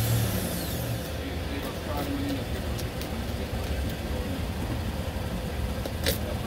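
A motor vehicle engine running at idle, a steady low rumble, with faint voices behind it and a short sharp hiss right at the end.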